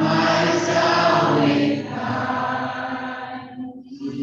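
A man's voice singing a slow liturgical refrain into a microphone, holding long notes, as a sung response after the Creed at Mass. The singing fades near the end.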